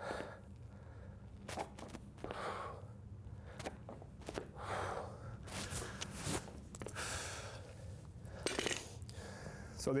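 Footsteps landing on a gym floor during quick alternating lunges while carrying a barbell, with breathy exhales between steps, over a steady low hum.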